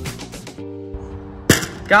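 A single sharp smack about one and a half seconds in: a pitched wiffle ball hitting the strike-zone board behind the batter for a strikeout. Background music plays throughout.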